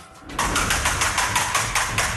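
Large hand-spun prize wheel turning, its pointer clicking rapidly against the pegs on the rim: a fast, even run of ticks starting about half a second in.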